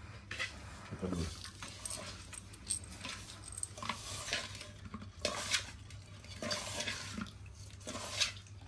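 Hands mixing small fish with a wet masala in an aluminium pot: irregular wet squelching and rustling, with now and then a click of the hand against the pot.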